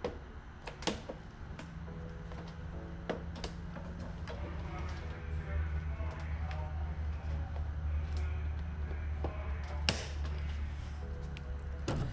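A few sharp clicks and knocks as the chute locks on a Craftsman 24-inch snowblower are pressed shut by hand, the loudest about ten seconds in, over a low steady hum and faint background music.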